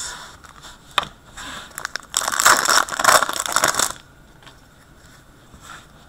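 Foil trading-card pack wrapper being crinkled and torn open by hand, with a loud crackling rustle lasting about two seconds in the middle, after a single click about a second in.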